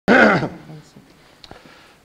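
A man's voice, loud and close to the microphone, gives one short utterance right at the start, then low room tone with a single faint click about one and a half seconds in.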